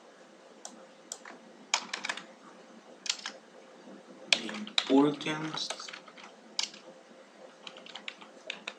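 Irregular, separate clicks of a computer keyboard and mouse, a dozen or so over several seconds. A brief vocal murmur about five seconds in.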